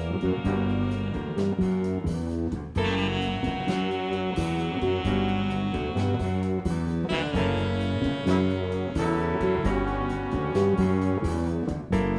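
Jazz-rock ensemble playing live: a drum kit keeping a steady beat under electric bass and guitar, with a horn section of saxophones and brass holding chords that change about three seconds in and again about seven seconds in.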